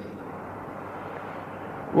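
Steady background hiss with a faint low hum: the noise floor of an old lecture recording, between sentences.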